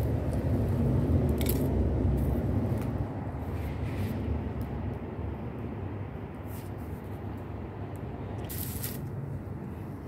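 Steady low outdoor rumble with a few brief rustles, easing slightly in level after a few seconds.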